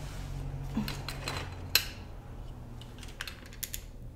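A scatter of small, sharp clicks and ticks from wire and diode leads being handled and pressed against a connection inside a motorcycle's chrome headlight shell. The loudest click comes a little before the middle, and a few quicker ticks come near the end, over a low steady hum.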